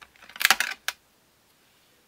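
Hands handling craft supplies, metal cutting dies on their sheet and a plastic stamp case: a short clatter of clicks and rustle about half a second in, then a single click.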